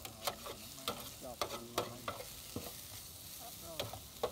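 Short noodles stir-frying in a hot pan with a steady sizzle. A metal spatula scrapes and clacks against the pan in irregular strokes, a few a second.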